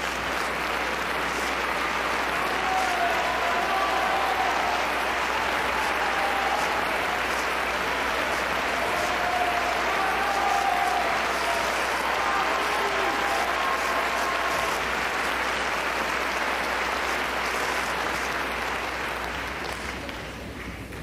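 Concert audience applauding steadily after a song, easing off slightly near the end.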